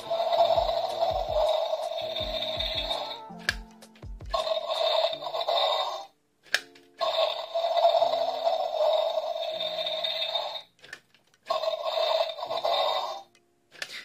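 Bootleg Indominus rex action figure's built-in sound module playing recorded dinosaur roar clips through its small speaker, set off by the roar button on its back, in four bursts with short breaks between. The roars sound heavily compressed.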